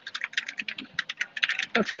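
Rapid, irregular clicks of typing on a keyboard, picked up through a video-call connection.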